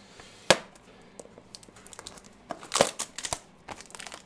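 Crinkling and rustling of a trading-card pack wrapper and cards being handled by hand, with a sharp click about half a second in and a louder burst of crinkling a little before three seconds.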